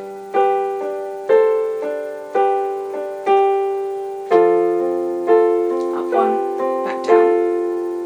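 Yamaha digital piano playing a slow two-bar chord passage, a chord struck roughly every half second to second and each left to fade. The bass note steps down from G to F about halfway through.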